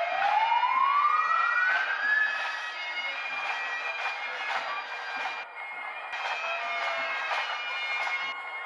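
A sheriff's patrol vehicle siren gives one long rising wail over the first two seconds or so. Then bagpipe music with steady held notes follows.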